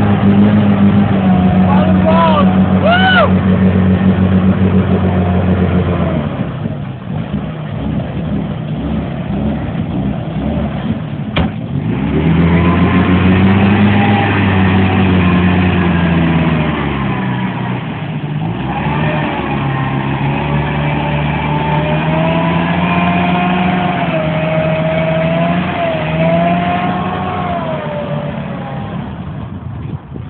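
Jeep Wrangler's engine revving in long surges as it is driven through deep mud, its pitch rising and falling, easing off about six seconds in and again around eighteen seconds.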